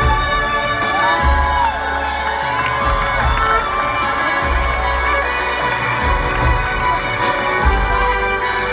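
Concert crowd cheering and whooping over live music from a string ensemble and piano, with a pulsing bass underneath. The whoops come mostly in the first few seconds.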